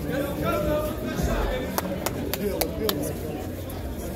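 A handball being struck and rebounding in a one-wall game: about five sharp slaps in quick succession in the second half, over people's voices.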